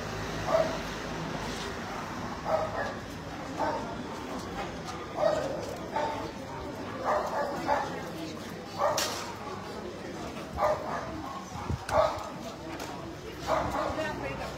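A dog barking repeatedly, about a dozen short barks roughly a second apart, over a background murmur of voices.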